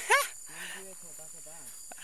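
A short, loud, sharply rising cry from a person's voice, followed by quiet talking, over a steady high chirring of crickets.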